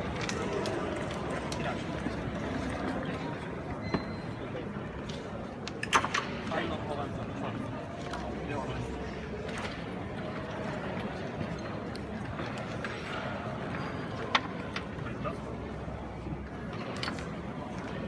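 Background chatter of voices in a large hall, with a few sharp plastic clicks of table-football figures flicked against the ball; the loudest click comes about six seconds in, with smaller ones after it, and another near the end.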